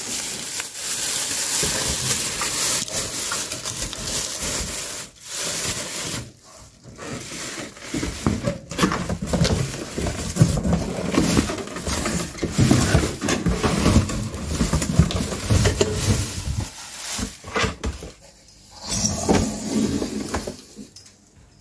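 Cardboard shipping box scraping and rubbing against a microwave oven as it is slid off, with plastic wrap crinkling, in long rustling stretches broken by a few short pauses.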